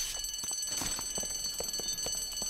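Electric school bell ringing steadily, the signal that class is over, with faint knocks of pupils packing up underneath.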